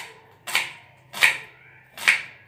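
Kitchen knife slicing a red onion on a plastic chopping board: three sharp cuts, each knocking on the board, about two-thirds of a second apart.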